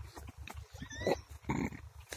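A dog giving two short yelps, about a second in and again half a second later.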